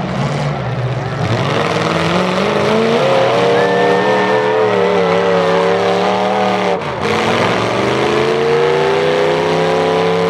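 Demolition derby car engines revving hard, their pitch climbing for several seconds as a car accelerates across the dirt. The revs drop away briefly about seven seconds in, then climb again.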